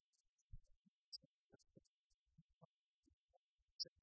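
Near silence, with a few faint scattered low thumps and ticks.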